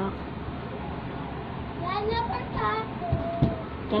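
Steady background hiss, then a brief untranscribed voice about halfway through, followed by a couple of low knocks before speech resumes at the end.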